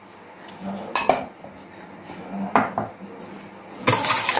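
Metal spoon clinking against a stainless steel mixing bowl: three separate sharp clinks, then quicker tapping and scraping near the end as the spoon starts beating an egg.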